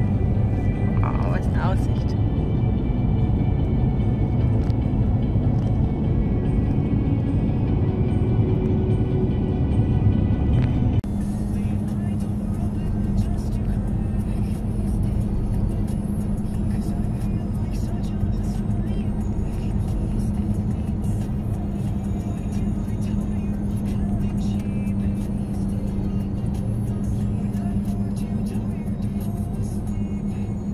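Road and engine noise inside a van's cab while driving, with music playing over it. About eleven seconds in, the sound changes abruptly to a steadier drone.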